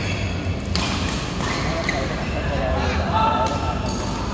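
Badminton rackets striking a shuttlecock in a doubles rally: a few sharp smacks, spaced irregularly, with voices in the hall around them.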